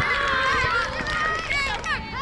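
Overlapping excited shouts from spectators and young players at a youth soccer game, loudest and densest in the first second, with high-pitched calls rising and falling near the end.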